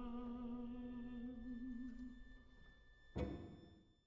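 Quiet closing music: one long held note with vibrato that fades out, followed about three seconds in by a brief, sudden note that dies away.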